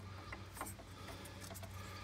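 Faint handling of a plastic wiring-harness connector and its cables: a few light ticks and rubs over a steady low hum.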